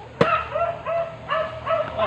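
A single sharp chop of a machete into a green coconut about a quarter second in, followed by a run of short, high, wavering whines and yips from an animal, several a second.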